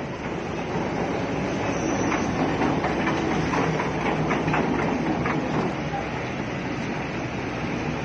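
Kobelco crawler excavator working close by: a steady diesel engine with clanking and rattling of steel and debris, a run of knocks between about two and five and a half seconds in.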